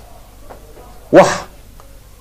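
A man's voice: one short spoken syllable a little over a second in, between pauses in his speech.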